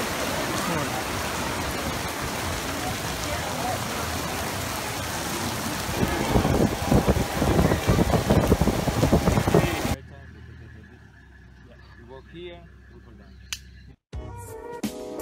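Heavy rain pouring onto a fabric tent canopy, a steady hiss that turns louder and more uneven about six seconds in, then cuts off suddenly about ten seconds in to a much quieter background.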